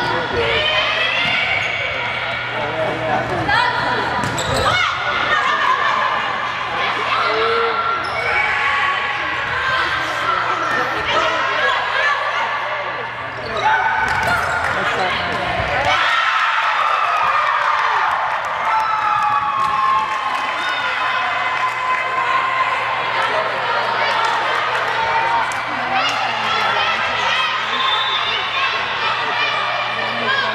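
Volleyball rally on a hardwood gym court: the ball is struck and bounces on the floor, over players calling and spectators shouting.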